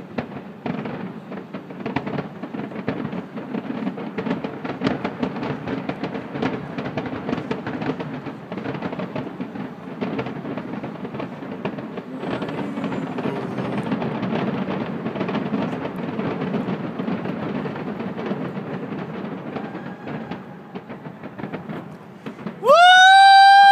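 A fireworks display: a dense, continuous run of pops and crackling bangs from many shells bursting at once, swelling and easing in loudness.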